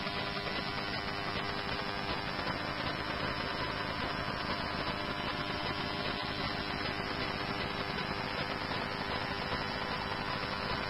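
Steady static hiss from a fire dispatch radio feed between transmissions, with a faint hum under it.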